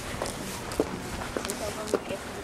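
Footsteps on a concrete walkway, a handful of sharp, irregular steps, with faint talking voices behind them.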